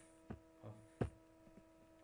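Two sharp computer mouse clicks, about three quarters of a second apart, the second louder, over a steady electrical hum.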